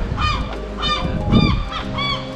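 Gulls calling: a run of short cries, about two a second, each rising and falling in pitch.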